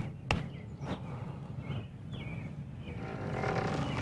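Soft outdoor ambience with two sharp clicks in the first half second and a few faint chirps, then a rush of noise that swells over the last second.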